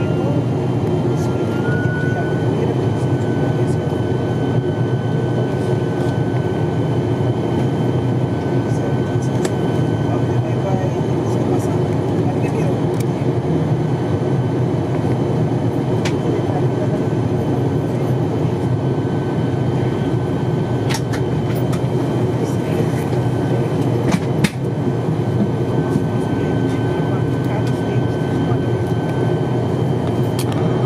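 Cabin drone of an ATR 42-600's Pratt & Whitney PW127 turboprop engines and propellers while taxiing: a steady hum with a thin high whine held over it. A couple of sharp clicks come about two-thirds of the way in.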